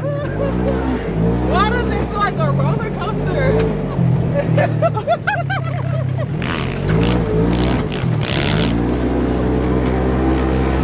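Engine of an off-road side-by-side running and changing pitch as it drives over sand dunes, with a voice over it.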